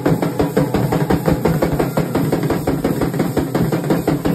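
Several dhols, double-headed barrel drums, beaten together in a fast, steady rhythm of many strokes a second.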